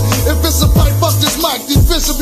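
Hip hop track playing: a beat with deep held bass notes and regular kick drums, with a rapped vocal over it.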